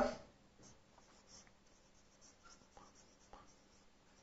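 Faint scratching of a marker pen writing on a whiteboard, a few short strokes that are a little louder in the second half.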